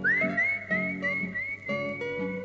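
A person whistling high over acoustic guitar accompaniment: an upward swoop, then a string of short notes that each slide up to the same pitch, then one held note.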